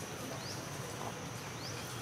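Insects droning steadily at a high pitch, with two short rising chirps, one about half a second in and one near the end.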